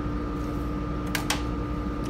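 Steady room ventilation hum with a constant tone in it, and two quick clicks a little past a second in as the clear plastic plotter is moved aside on the table.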